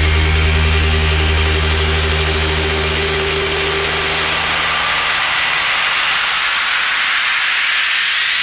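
House-music breakdown: a held low bass drone fades out around the middle while a rising white-noise sweep builds in the highs toward the end.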